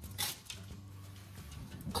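Metal baking sheet sliding onto a wire oven rack, a brief light scrape just after the start, followed by a faint low steady hum.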